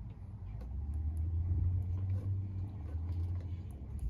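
Steady low hum of an idling vehicle engine heard from inside the cab, with a few faint ticks over it.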